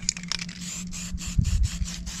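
A fingertip rubbing and scraping across the paint-covered board in quick, repeated short strokes, over a steady low hum.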